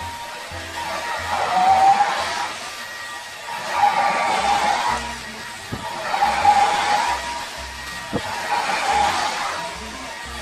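A hand-held hair dryer blowing, its noise swelling and fading every couple of seconds as it is moved over a round brush through wet hair. Background music with a steady bass line plays underneath.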